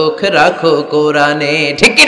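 A man's voice chanting a line in a melodic, sing-song style, holding long steady notes. A crowd's shout breaks in at the very end.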